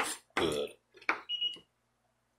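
A chef's knife strikes a wooden cutting board while dicing bell pepper: a sharp chop at the start and another about a second in. Between them comes a short low vocal sound, and after the second chop a brief high tone.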